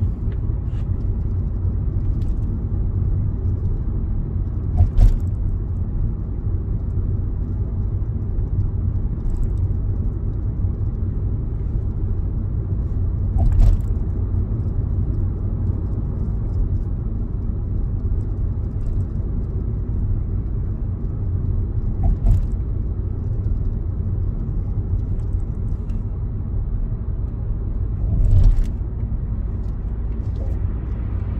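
Steady low road and engine rumble heard inside a Kia Seltos cabin while driving, with four brief thumps spaced several seconds apart.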